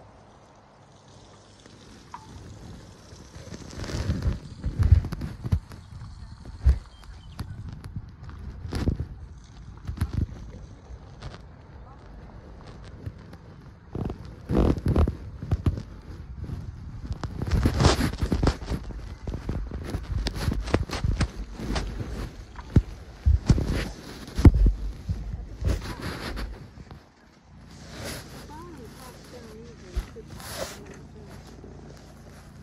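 Handling noise from a covered phone microphone: irregular muffled thumps and rubbing, as if the phone is carried in a pocket or hand while moving about.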